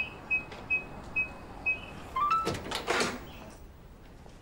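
Electronic keypad door lock beeping five times as a code is keyed in, then a short rising unlock chime about two seconds in, followed by the clatter of the lock releasing and the door being opened.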